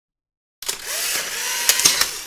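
Instant camera firing with a sudden click, then its motor whirring steadily as it pushes the print out, with another click near the end.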